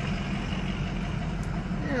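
Truck engine running low and steady with tyre noise, heard from inside the cab while driving slowly on a gravel road.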